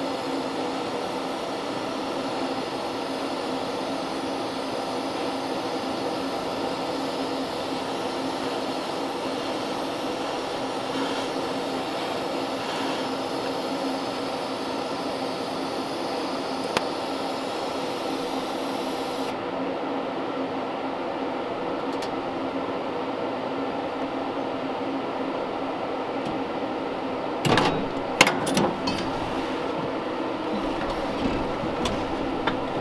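DC TIG welder arc buzzing steadily as a pedal bracket is welded. The high hiss drops away about two-thirds of the way through, and a few sharp knocks follow near the end.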